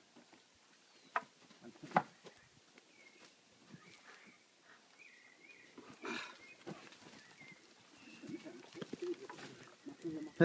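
Zebu cattle being handled in a wooden corral: two sharp knocks about one and two seconds in, a short rushing noise around six seconds, and faint bird chirps, with low voices near the end.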